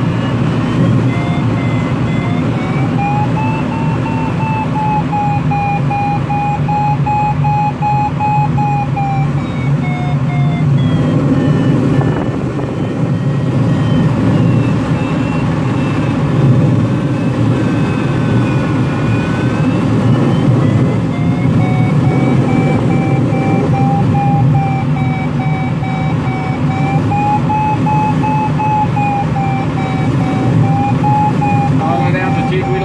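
Airflow rushing past a glider cockpit in flight, with a smooth electronic tone, typical of a glider's audio variometer, that slowly slides up and down in pitch. The tone fades out a little before the middle and comes back about two-thirds of the way through.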